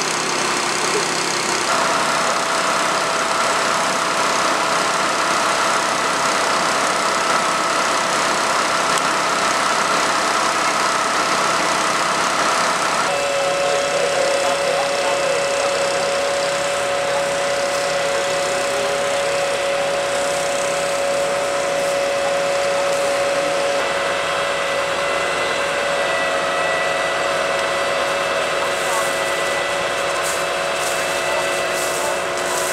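Emergency vehicles' engines idling at the scene, a steady running sound with a few constant whining tones over it. The tones change suddenly about two seconds in and again about 13 seconds in.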